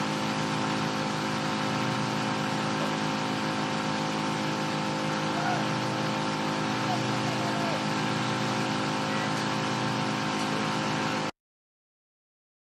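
An engine running steadily at idle, a constant drone that does not change pitch, cut off suddenly near the end.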